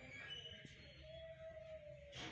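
Near silence: faint outdoor background, with a faint held tone in the second half.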